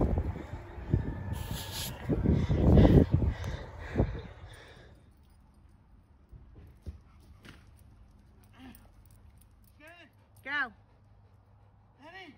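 Wind buffeting the microphone for the first four seconds, then much quieter, with a few short, rising-and-falling whining calls near the end.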